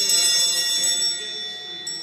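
Sanctus bells, a cluster of small hand-held altar bells, shaken in a bright jangle at the consecration of the Mass, shaken again near the end and ringing on.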